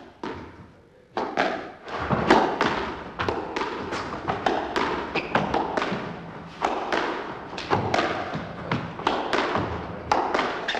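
A squash rally of volleys: the ball is struck by rackets and hits the court walls in quick succession, a couple of sharp hits a second, each with a short echo in the court.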